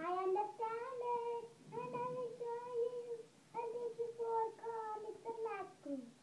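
A young girl singing unaccompanied, holding several long, steady notes with short breaths between them.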